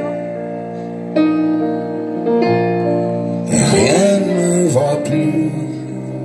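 Live band music between sung lines: an electric keyboard holds sustained chords that change twice, then the music grows fuller and louder about three and a half seconds in.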